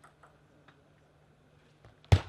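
Near silence in a table tennis hall, broken by a few faint, sparse ticks of a celluloid table tennis ball, the last one just as a serve is struck near the end.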